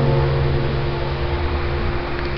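The last strummed chord of a classical guitar ringing out and slowly fading, over a steady hiss.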